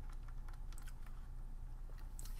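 Light, irregular taps and clicks of a stylus writing on a pen tablet, over a steady low hum.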